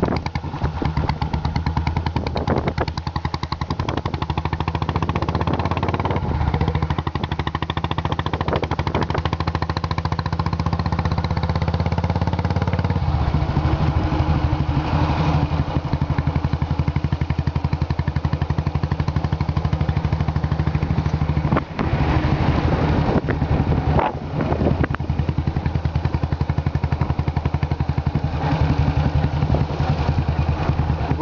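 Royal Enfield single-cylinder motorcycle engine running under way with a rapid, even exhaust beat, heard from the saddle. The engine note shifts about thirteen seconds in, and the sound drops out briefly twice a little past the twenty-second mark.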